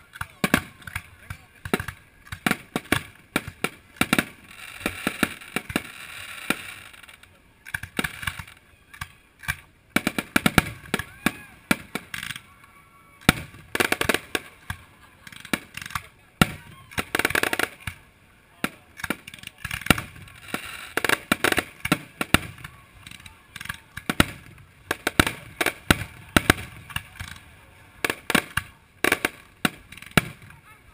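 Fireworks show: aerial shells bursting in a rapid, irregular series of sharp bangs. Two stretches of steady hiss come from ground fountains burning.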